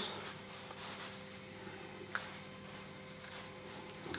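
Faint rubbing and handling of a rubber flexible pipe cap in the hands, with one short sharp click about two seconds in, over a faint steady hum.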